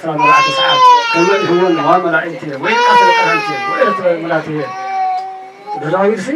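A baby crying in three long wails, each falling slightly in pitch, over a man talking through a microphone.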